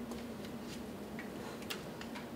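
Quiet room tone with a steady low hum and about five light, irregular clicks.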